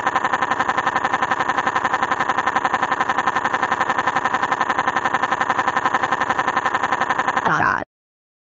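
A synthesized text-to-speech voice holding one steady pitch with a rapid, even pulsing, like one syllable repeated very fast, for several seconds before cutting off suddenly near the end.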